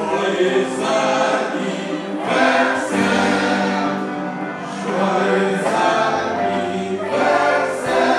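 A group of voices singing together in chorus over musical backing, with long held notes that change pitch every second or so.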